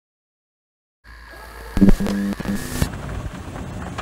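Old camcorder home-video tape audio cutting in after a second of silence: hiss and hum with a steady high whine, then a loud pitched sound lasting about a second.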